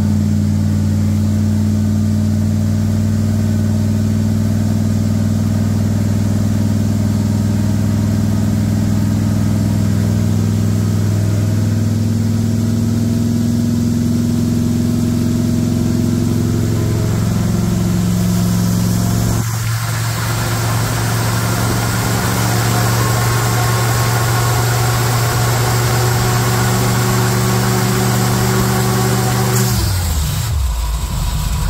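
Chrysler Industrial V8 in a Bombardier snowcoach, fed by a Holley Sniper EFI, running steadily at a raised idle. From about twenty seconds in, more hiss and mechanical clatter come through on top of the engine note.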